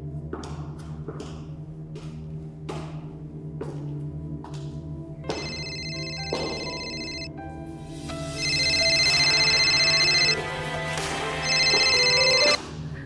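Suspense music with a low steady drone and a series of struck, ringing percussion hits, then a phone ringtone that comes in about five seconds in and sounds three times, the second and third rings louder.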